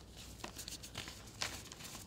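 Compressed powder of Ajax cleanser, corn flour and baby powder crumbling and crunching softly between fingers. The sound is quiet and scattered, a few small crackles, with a slightly louder crunch about a second and a half in.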